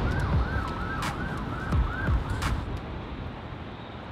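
An emergency-vehicle siren on a fast yelp, its pitch sweeping up and down about three times a second, over a low rumble of street traffic. The siren stops about two and a half seconds in.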